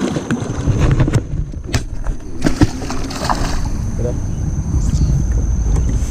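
A hooked giant snakehead splashing at the surface as it is reeled in beside the boat, with a few sharp clicks from handling the rod and reel. Wind rumbles on the microphone, and a steady high insect whine runs underneath.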